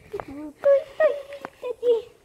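A child's voice making short, high, wavering vocal sounds rather than clear words.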